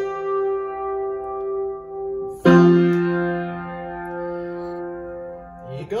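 Yamaha upright piano played with both hands in held chords. A louder chord is struck about two and a half seconds in and rings on, fading slowly, until it is released near the end.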